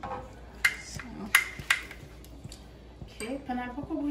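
Kitchen tongs knocking against a nonstick frying pan of cream three times, each knock with a short ring, the second the loudest. A woman's voice starts near the end.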